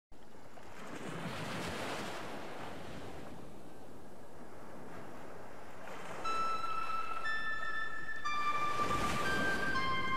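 Ambient intro music: soft swelling whooshes like surf, then from about six seconds held electronic notes that come in one after another, roughly once a second, building a chord.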